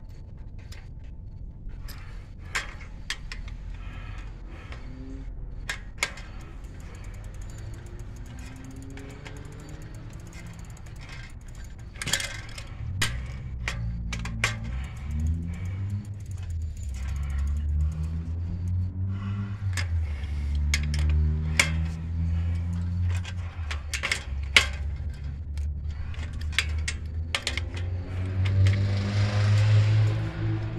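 Scattered metal clicks and clinks of an adjustable wrench working the rear axle nuts of an adult tricycle. From about halfway a louder low drone with shifting pitch runs underneath.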